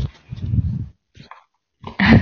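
A short muffled noise over a remote student's line in an online call, then the audio drops out to dead silence for most of a second.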